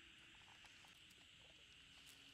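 Near silence: faint outdoor background with a steady high-pitched hum and a few faint ticks.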